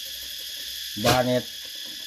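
Steady high-pitched drone of insects, even and unbroken, with one short spoken word about a second in.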